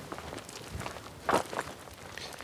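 Footsteps on dry grass and dirt: a few short steps over a faint background hiss, the loudest a little past the middle.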